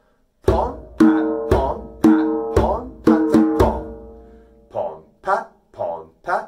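Hand-played djembe playing the pattern "pon pat, pon pat, pon pat-a, pon": eight strokes in about three seconds, deep bass strokes alternating with ringing open tones, the last left to ring out. A man's voice starts again near the end.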